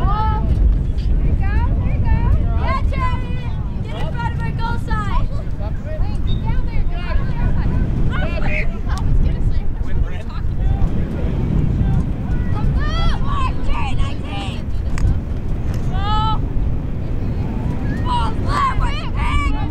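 Girls' and spectators' voices shouting short calls across an outdoor lacrosse field, too distant to make out, over a steady low rumble.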